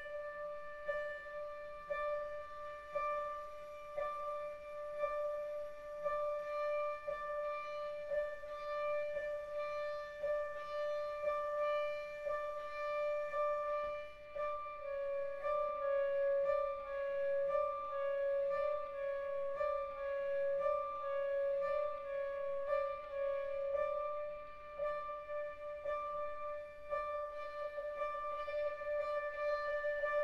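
Contemporary classical chamber music: a long held high note with soft, even ticks about once a second beneath it. About halfway through, the note steps slightly lower and breaks into a run of shorter notes before settling into a held note again.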